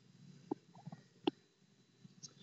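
Quiet pause holding two faint short clicks, a little under a second apart, with a couple of fainter ticks between them.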